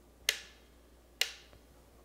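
Two sharp clicks, about a second apart, each dying away quickly.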